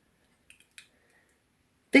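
A spoon stirring syrup in a glass mason jar, giving two faint light clicks against the glass a fraction of a second apart.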